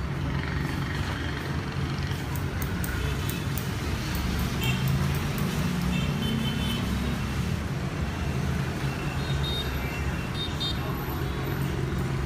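Steady street traffic noise of motorbikes, with a continuous low hum throughout.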